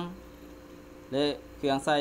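Steady electrical mains hum, a low drone with faint steady higher tones. It is heard on its own for about a second between spoken words.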